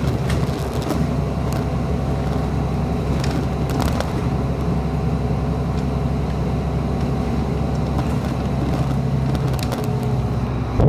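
2011 Orion VII 3G bus under way, its Cummins ISL9 inline-six diesel and ZF Ecolife automatic transmission running steadily, heard from inside the cabin. Scattered short clicks and rattles come through over the steady engine sound.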